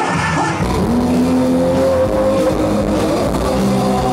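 Live band music that cuts about half a second in from a vocal number to a loud rock band. The electric guitar holds long notes, one of them sliding up in pitch.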